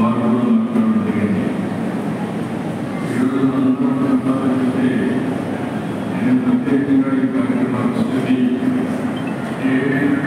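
A man's speech amplified over public-address loudspeakers in a large hall, coming in phrases with short breaks.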